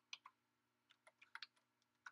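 Computer keyboard being typed on, faint: a couple of keystrokes at the start, then a quick run of about eight keys about a second in.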